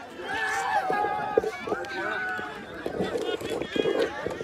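Several men's voices shouting and calling over one another as players celebrate on an open cricket ground, with footfalls of players running across the field.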